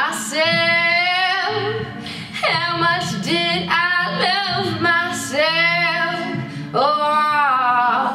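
A singer holding long, wordless vowel runs with vibrato, in several phrases, over a low sustained guitar accompaniment.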